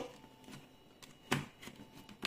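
A kitchen knife blade working along the rim of a clear plastic chocolate-egg mould, trimming the excess set chocolate from the edges of the shells. It is mostly quiet, with one sharp tap of blade on plastic a little past the middle and a few faint ticks after it.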